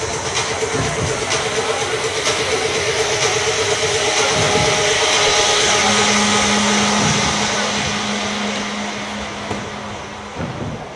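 Music playing through a sports hall's loudspeakers over a noisy hall, with a long steady low held note coming in about six seconds in and the overall sound swelling toward the middle before easing off.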